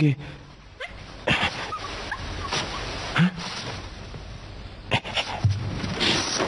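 A dog whimpering and giving short yips, among a few brief noisy sounds, with a sharp knock about five seconds in.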